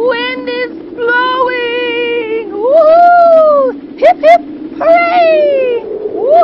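A woman's voice calling out in long, drawn-out "whoa" cries that slide up and down in pitch, with two short sharp squeals about four seconds in, over a steady low helicopter hum.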